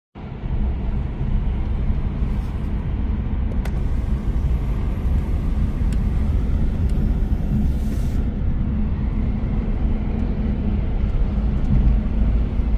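Car driving at highway speed, heard inside the cabin from the back seat: steady road and wind noise with a strong low rumble.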